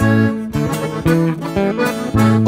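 Mexican regional song in an instrumental passage: strummed and plucked guitar over a moving bass line.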